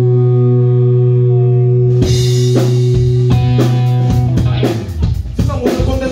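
Live rock band: a held electric guitar chord rings steadily, then drums come in about two seconds in with scattered hits that build into full drum kit playing near the end.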